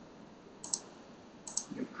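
Two computer mouse-button clicks about a second apart, each a quick pair of ticks.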